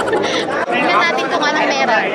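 Crowd chatter: many people talking at once in a crowded hall.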